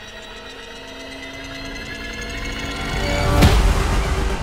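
Dramatic background score: held tones that swell steadily louder, capped by a sudden loud hit about three and a half seconds in.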